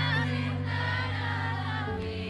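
A woman singing a slow pop ballad live over steady held instrumental chords, her voice wavering and gliding through a drawn-out phrase in the first second and a half.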